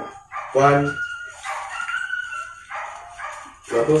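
A dog whining with a thin, wavering high tone, after a short bark or yelp about half a second in.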